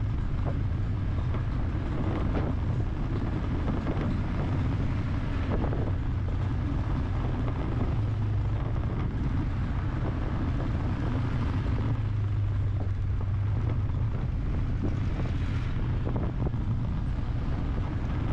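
Steady vehicle noise of a car driving in traffic: a continuous low engine hum under road and tyre noise, with no sudden events.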